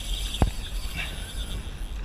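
Wind rumbling on the microphone over choppy water, with one sharp knock about half a second in.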